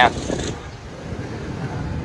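Street ambience: a steady low rumble of road traffic.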